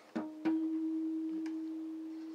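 Acoustic guitar: two quick plucks, the second left ringing as one steady, clear note that fades slowly.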